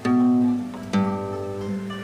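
Single notes plucked on a guitar as part of a simple riff: two notes about a second apart, the second lower, each left to ring out.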